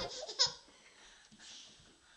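A baby's brief laugh, a single short squeal about half a second in.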